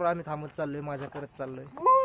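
Men's voices talking, then about two seconds in a loud drawn-out whoop that rises and then falls in pitch, as one of them shouts out in celebration.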